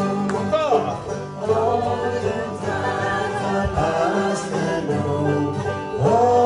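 Live acoustic folk music: several voices singing together over banjo and acoustic guitars.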